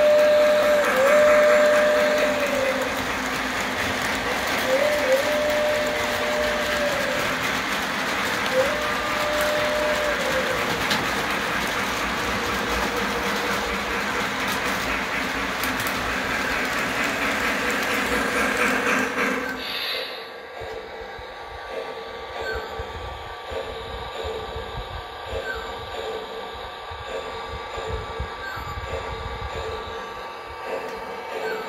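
Model steam locomotive's sound system blowing its steam whistle in several blasts, two long ones and shorter ones, over the steady running noise of the train on the track. About twenty seconds in the running noise suddenly drops to a quieter rumble with faint clicks as the cars roll by.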